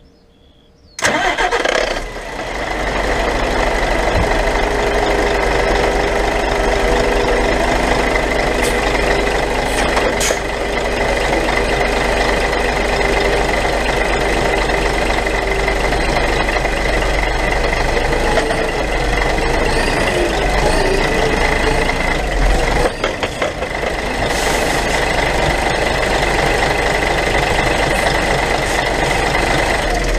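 An HGV tractor unit's diesel engine starting suddenly about a second in, then running steadily close by.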